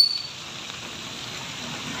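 A brief high-pitched chirp at the very start, then a steady, even hiss of background noise.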